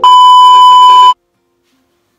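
Television test-tone beep of the kind played over colour bars: one loud, steady, high tone lasting about a second that cuts off suddenly.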